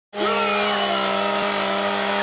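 A chainsaw engine running at a steady high speed, starting abruptly.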